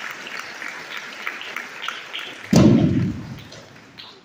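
A crowd clapping, many hands at once, in a large hall. About two and a half seconds in there is a single loud, low thud that dies away over about a second.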